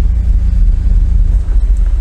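Toyota 5VZ-FE 3.4-litre V6 engine of a GAZ-69, heard from inside the cabin as the vehicle pulls away slowly in drive: a steady low rumble with a bassy exhaust note.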